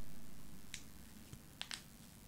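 Pause in a man's recited verse over a studio microphone: the end of the last line fades away slowly in a reverb tail, followed by a few faint short clicks.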